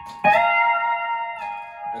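E9 pedal steel guitar, a chord on strings five and four with the B and C pedals down. It is picked about a quarter second in, slides up into pitch, shifts slightly as a pedal moves near the end, and rings on.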